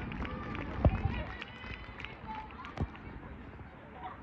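Distant shouts and calls from footballers on the pitch, with a sharp thump about a second in and a softer one near three seconds.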